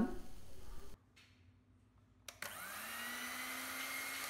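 Electric hand mixer whipping cream in a glass bowl. After a silent gap, the motor starts about two and a half seconds in, rises in pitch as it spins up, then runs steadily.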